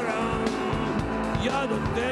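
A rock band playing live, with the guitar to the fore and a voice over it, at a steady loudness.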